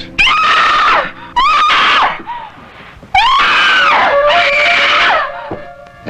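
Three high-pitched screams: two short ones a second apart, then a longer one of about two seconds.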